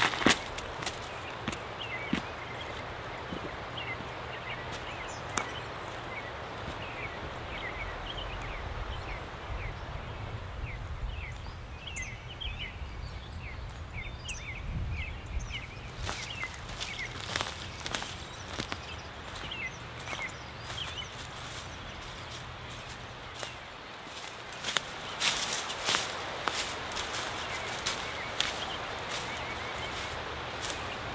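Footsteps on dry leaf litter in a forest, in clusters of sharp rustling steps about halfway through and again near the end, over a steady low outdoor background. Small birds chirp quickly and repeatedly through the first half.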